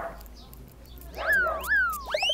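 A cartoon-style edited sound effect: two quick whistle-like tones about half a second apart, each shooting up in pitch and then sliding back down.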